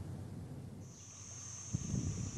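Faint steady high-pitched insect buzz that starts about a second in, over low background hiss, with a soft knock shortly before the end.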